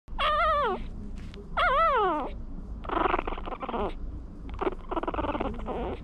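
Newborn Maltese puppies whining. Two high, wavering cries fall in pitch at their ends in the first two seconds, then two longer, rougher whimpers follow.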